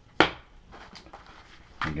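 One sharp clack of hard parts being handled, a fifth of a second in, followed by faint small handling noises.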